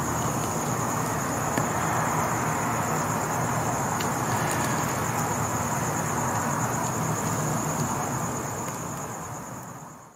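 A steady, high-pitched insect trill, like a cricket, held over a constant background hiss and low hum, fading out near the end.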